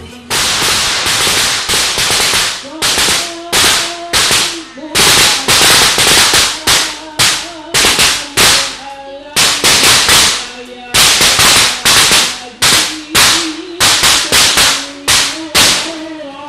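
A long run of loud, sharp cracks, each ringing out briefly, about two a second in an uneven rhythm, with a faint wavering melody underneath.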